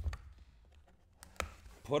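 A few light clicks and taps from hands handling a cardboard trading-card box on a table, with quiet in between; the loudest tap comes about one and a half seconds in.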